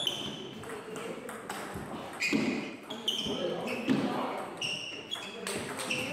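Table tennis ball in a rally: several sharp hits of rubber paddles and bounces of the celluloid ball on the table, each with a short, high ring.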